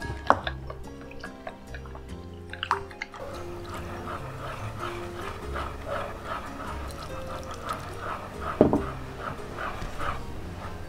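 Background music over wooden chopsticks stirring egg into a well of flour, with a few sharp knocks, the loudest near the end.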